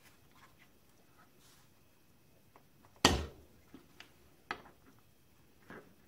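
Aluminium model-engine parts knocking and clicking together as they are handled and fitted by hand: one sharp knock with a short ring about three seconds in, then a few lighter clicks.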